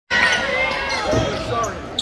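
Basketball game in play on a hardwood gym court: the ball and the players' shoes on the floor, with voices in the hall.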